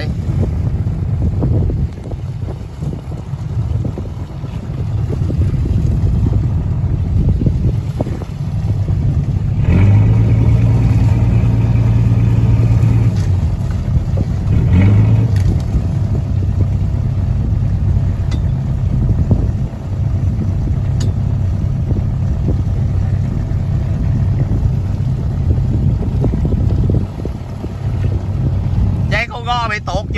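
Fishing boat's engine running steadily with a low hum, water washing along the hull. About ten seconds in the engine note grows louder for a few seconds, and swells again briefly around fifteen seconds.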